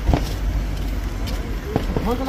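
Busy night-street ambience: a steady low rumble of road traffic under crowd voices, with two short sharp sounds, one just after the start and one near the end.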